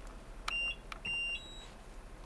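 Plum A+ infusion pump beeping as it is switched on: a short high beep about half a second in, then a longer one at the same pitch about half a second later, with light clicks. These are its power-up tones as it starts its self-test.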